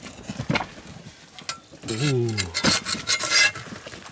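Wooden oven door being pulled out of the mouth of an adobe (earth) oven, scraping and knocking against the earthen rim, with scattered scrapes and a dense burst of scraping in the second half.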